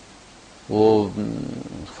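Speech only: after a short pause with faint room hiss, a man's voice says one drawn-out word, "woh", starting under a second in and trailing off lower and quieter.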